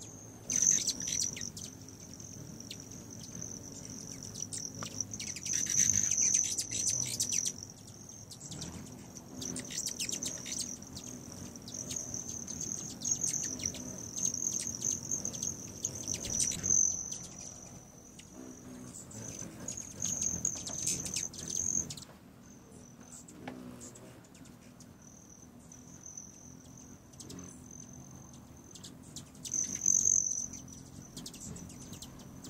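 Hummingbirds at a feeder: a high, steady metallic trill from the wings of male broad-tailed hummingbirds that swells and fades as birds come and go, with short chip calls and a low wing hum. The trill drops out for a few seconds in the second half.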